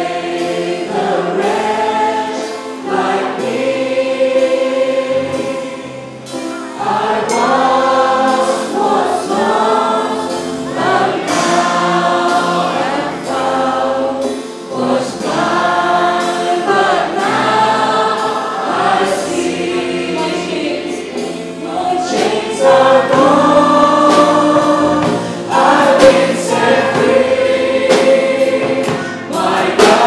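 Live worship song: many voices singing together, accompanied by a band with drum kit and cymbals, in sung phrases of a couple of seconds each.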